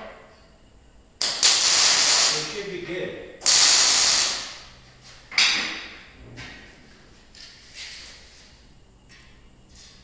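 Three short bursts of hissing spray from a pressurised nozzle, each starting suddenly and trailing off. The first and second last about a second each, and the third is shorter.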